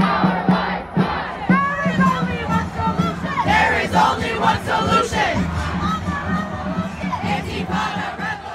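A crowd of demonstrators shouting together in the street, many voices overlapping.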